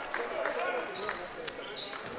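Crowd chatter echoing in a gymnasium, with a basketball being dribbled on the hardwood court and one sharp knock about one and a half seconds in.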